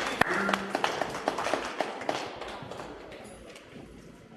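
Audience applauding, the clapping thinning out and fading away over a few seconds.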